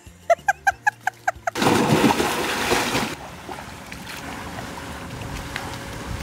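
A quick run of about nine short pitched notes, then about a second and a half of water splashing.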